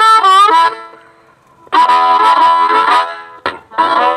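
Blues harmonica played through a handheld microphone into a 1993-issue tweed Fender Bassman amp. A bent phrase breaks off early, then after a pause of about a second comes a held chord that fades, a quick stab, and a new phrase starting near the end.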